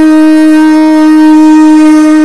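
A wind instrument holds one long, steady, loud note in a Saraiki folk song, its pitch unwavering.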